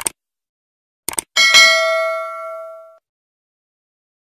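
Subscribe-button animation sound effect: a short mouse-style click, a quick double click about a second in, then a bright bell ding that rings and fades over about a second and a half.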